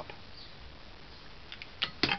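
Low room tone with a few faint clicks near the end.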